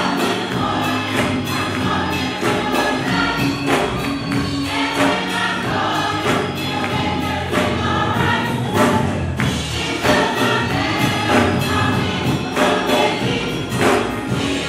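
Gospel choir singing with instrumental accompaniment and a steady beat.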